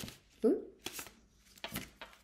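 A deck of oracle cards being shuffled and dealt out by hand: a few separate crisp card snaps, with a short hummed "hmm" about half a second in.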